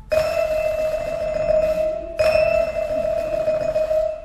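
Vibraphone struck twice on the same high note, about two seconds apart, each note ringing on with its bright metallic overtone; the second note is cut short near the end.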